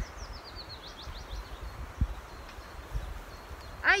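A small songbird singing a short run of quick notes that step down in pitch, over a faint outdoor hush. A soft low thump comes about halfway through.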